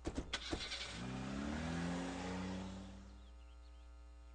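A few sharp clicks, then a car engine accelerating, its pitch rising and then holding steady before it fades away about three seconds in.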